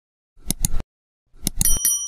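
Subscribe-button sound effect: two sharp mouse clicks, then another quick run of clicks and a short bright bell ding near the end.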